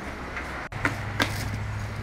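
Cardboard wheel boxes being handled, a few light knocks and taps over a steady low background hum; the hum breaks off briefly about two-thirds of a second in and comes back at a different pitch.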